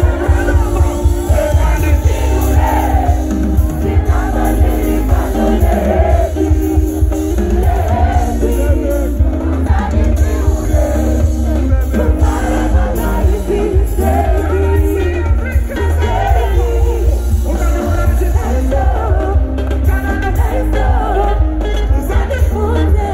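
Live band music played through a festival PA, with a singer's voice over a heavy, continuous bass line, guitars and drums, heard from within the crowd.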